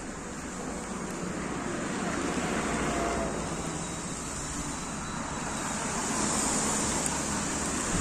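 Road traffic on a city street: a steady rush of cars' tyres and engines, swelling as vehicles pass, about three seconds in and again near the end.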